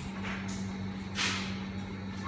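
Two brief scraping handling noises as a removed ceiling fan's metal motor housing and wiring are worked on by hand, the louder one about a second in, over a steady low hum.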